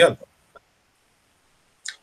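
A man's voice finishing a phrase in the first moment, then silence broken by one faint click about half a second in; another voice starts right at the end.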